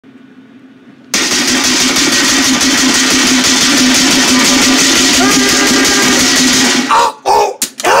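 Loud steady machine noise, a rushing whir over a low steady hum, starts suddenly about a second in and stops about a second before the end. Short pitched voice-like sounds follow.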